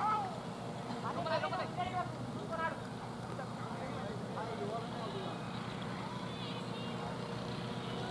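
Short shouted calls from cricket players out on the field, several in the first few seconds and a couple more around the middle, over a steady low background rumble.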